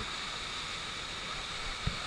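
Steady rush of water pouring over an artificial sheet-wave surf pool, with a short thump near the end.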